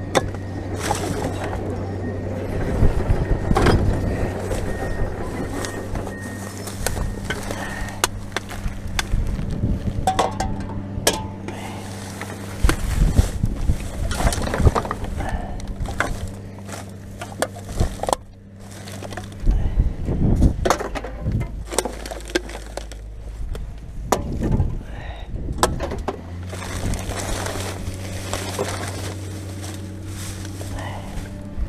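Gloved hands rummaging through loose rubbish in a dumpster: plastic bags and wrappers rustling, with repeated clinks and knocks of bottles and containers, over a steady low hum.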